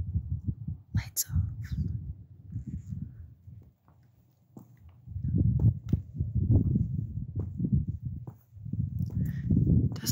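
Low, uneven rumbling and rustling handling noise on a handheld camera's microphone as it is moved about, with a sharp click about a second in.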